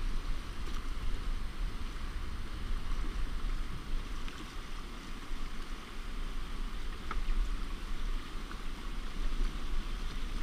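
Fast, choppy river current rushing and splashing against a canoe's hull, a steady hiss of moving water, with wind rumbling on the camera's microphone.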